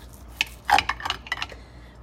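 Steak knife and fork clinking and scraping against a dinner plate while cutting a cooked ribeye steak: a sharp click about half a second in, then a run of clinks and scrapes.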